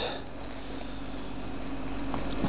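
Steady background hiss with a faint low hum, and no distinct handling sounds.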